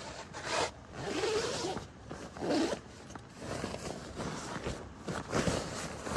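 Zipper of a nylon waterproof sleeping bag cover being drawn in several short pulls, with the fabric rustling and scraping as it is pulled over the sleeping bag.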